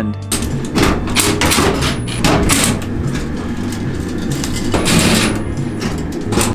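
Metal fluorescent-fixture parts clattering and knocking as the ballast and lamp-holder strips are taken out, with a cordless drill/driver run in two short bursts, about two and five seconds in, to back out screws. Background music plays underneath.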